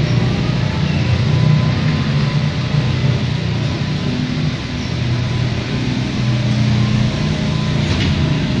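Advolution 2710 ride-on floor scrubber running as it drives along the floor: a steady low motor hum with a hiss over it, swelling and easing a little.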